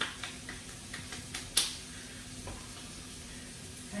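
Salisbury steak patties frying in a pan, a faint steady sizzle, with a few light clicks in the first second and a half, the sharpest about a second and a half in. A steady low hum runs underneath.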